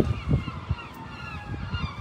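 A police siren wailing faintly in the distance, its pitch gliding slowly, with low rumble and handling noise on the phone's microphone.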